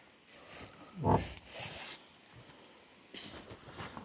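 A short hummed "mm-hmm" grunt about a second in, with rustling handling noise as the phone is moved around.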